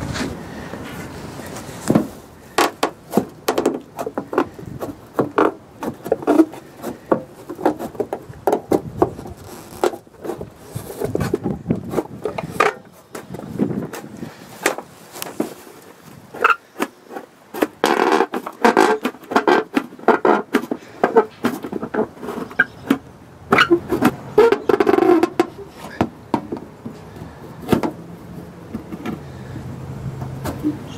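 Hand tin snips cutting through thin aluminum sheet: a long run of sharp snips at an irregular pace, loudest in two stretches in the second half.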